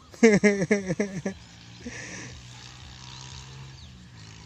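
A man's voice: a quick run of about five loud syllables, each falling in pitch, in the first second or so. After it comes a steady low hum, with a brief hiss about two seconds in.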